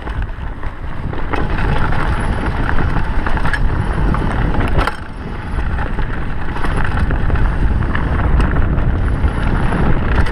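Mountain bike descending a rough dirt trail at speed: a steady rush of wind on the microphone and tyres on dirt, with the bike rattling and scattered sharp knocks as it runs over rocks and roots.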